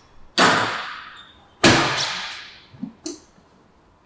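Two loud, sharp hits about a second and a quarter apart, each trailing off over about a second, followed by a couple of faint knocks near the end.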